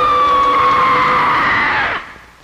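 One long, high-pitched scream, sliding slowly down in pitch and cutting off suddenly near the end.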